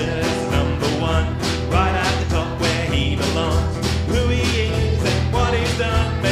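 Live band playing an upbeat song: strummed acoustic guitar and a drum kit keeping a steady beat, with a man singing over them.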